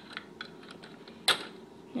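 Small Lego plastic pieces clicking and tapping as they are handled and pressed back into place on the bottom of a Lego vehicle. One sharper, louder click comes a little past the middle.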